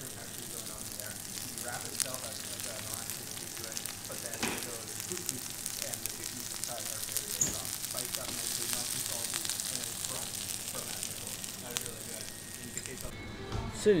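Moghrabieh (pearl couscous) and chickpeas with sliced onion sizzling steadily on a hot flat steel griddle.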